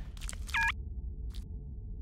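A short electronic beep about half a second in, the tone of a phone call being ended, over a faint low hum with a few soft clicks.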